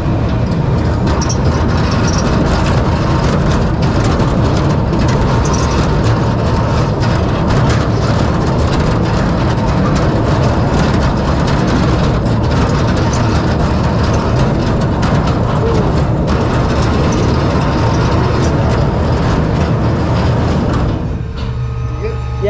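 Kiddie roller coaster train running along its steel track, a steady rumble with constant clattering clicks from the wheels. Near the end the rumble drops away as the train slows into the station.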